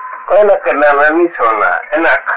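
A man speaking in Punjabi in an old recording that is muffled and telephone-like, with a faint steady tone underneath.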